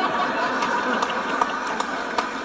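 Stand-up comedy audience laughing and applauding: a steady wash of crowd laughter with scattered claps.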